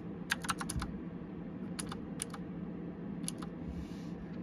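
Computer keyboard keys being typed: a quick run of about six keystrokes near the start, then a few single keystrokes, over a steady low hum.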